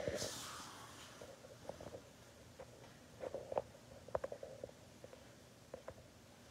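Faint handling noise from hands working a mannequin head's hair: a brief rustle at the start, then scattered light taps and clicks, clustered about three to four and a half seconds in.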